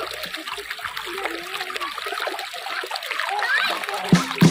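Shallow stream running over stones, a steady rush of water, with children's voices in the background.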